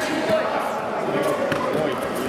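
Many overlapping voices of coaches and spectators shouting in a large sports hall during a kickboxing bout, with a few dull thuds of kicks and punches landing.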